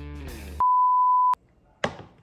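Background music that stops about half a second in, followed by a steady electronic beep at a single pitch lasting under a second and cutting off sharply, then a short click near the end.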